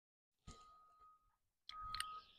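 Near silence: a dead gap at first, then a faint click about half a second in and a faint steady high tone, with a short, slightly louder rustle near the end.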